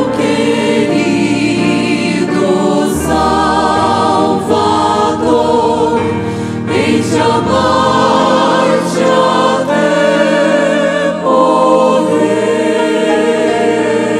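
Small mixed choir of women and men singing a Portuguese gospel hymn in parts, voices with a wavering vibrato.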